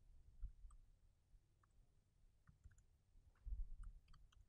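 Faint laptop keyboard typing: scattered key clicks, with a few soft low thuds near the end.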